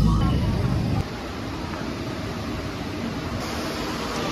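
Steady outdoor street noise with indistinct voices of people and vehicle sound. Background music breaks off right at the start.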